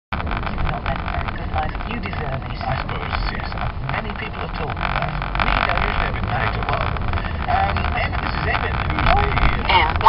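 Steady engine and road rumble heard inside a moving car's cabin.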